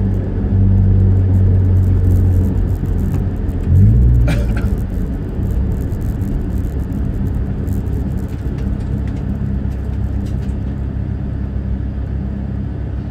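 Toyota Vios race car's engine heard from inside the cabin, running at low speed with a steady low hum. About four seconds in the revs rise briefly, then the engine settles back to a lower, slightly quieter drone.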